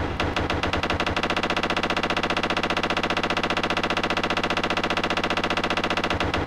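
Number wheels of a combination lock on an aluminium case clicking as they are rolled quickly, a fast, even run of about twenty clicks a second.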